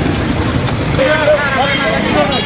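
Street crowd noise: men's voices talking over a steady rumble of vehicle engines and traffic, the voices coming through more clearly from about a second in.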